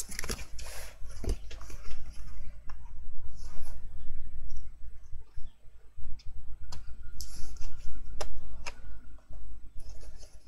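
Paper and cardstock being handled: sheets of card rustling and scraping on a hard desk, then a patterned paper mat pressed and smoothed down onto an album's card cover, with irregular light taps and a knock about a second in.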